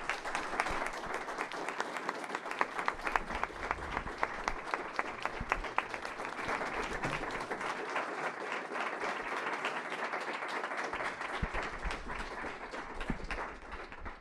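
Audience applauding, a dense run of hand claps that keeps a steady level and dies away near the end.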